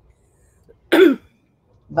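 A person clearing their throat once, briefly, about a second in.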